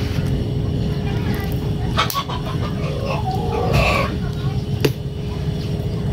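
Biting and chewing roasted corn on the cob, with a couple of sharp crunches, about two seconds in and again near the end, over a steady low rumble.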